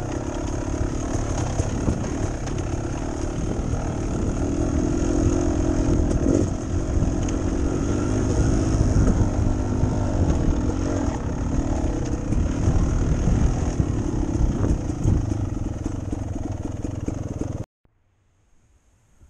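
Beta Xtrainer two-stroke dirt bike engine running at low trail-riding revs, its pitch rising and falling gently with the throttle. The sound cuts off suddenly near the end.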